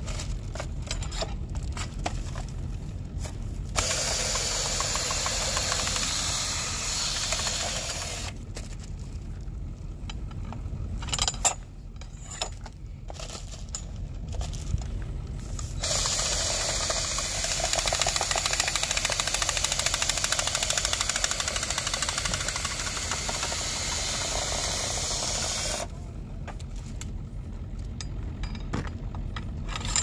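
A cordless drill spins a hay probe into a large square bale to cut core samples. It runs twice: about four seconds, then, after a pause, about ten seconds. A steady low rumble runs underneath.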